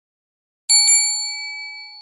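Notification-bell ding sound effect: two quick strikes close together about three-quarters of a second in, then one bright ringing tone that slowly fades.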